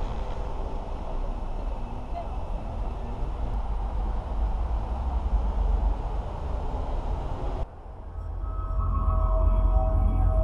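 Steady outdoor rumble and hiss on a handheld camera's microphone while walking. Nearly eight seconds in it cuts off sharply and background music with long held tones over a low drone fades in.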